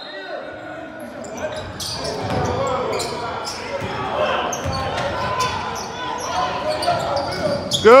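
Basketball game in a gym: a ball dribbling and bouncing on a hardwood floor, with a scatter of short knocks, over a bed of spectators' and players' chatter echoing in the large hall. A man shouts right at the end.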